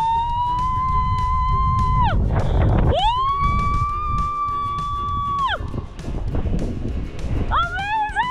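A woman screaming: two long screams, each held for about two seconds at a steady pitch, then a shorter one near the end. Wind rushes over the microphone throughout.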